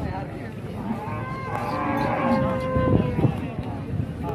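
Cattle mooing: one long, steady call lasting about two seconds, starting about a second in, over the background noise of a livestock market.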